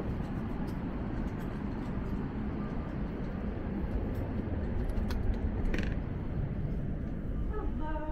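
A door's lever handle clicking as the door is opened, about five seconds in, over a steady rushing background noise.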